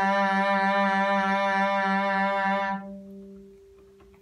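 Cello playing one sustained bowed note with a slow, tight vibrato, made by consciously rotating the forearm around the fingertip: a faulty vibrato technique that leaves it tight, slow and hard to speed up. The bowing stops near three seconds in and the string rings on faintly.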